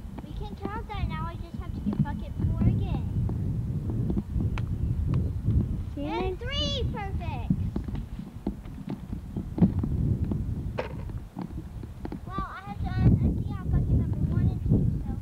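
Three high-pitched, strongly wavering vocal cries, one near the start, one in the middle and one near the end, over a steady low rumble with a few short knocks.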